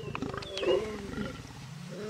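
Male lion growling in pulsing, rasping bursts, loudest about two-thirds of a second in.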